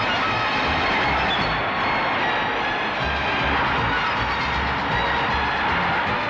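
Brass marching band playing a march with a steady bass-drum beat, over the noise of a large stadium crowd.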